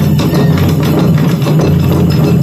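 Ensemble of Japanese taiko drums struck with sticks in a loud, dense, continuous rhythm.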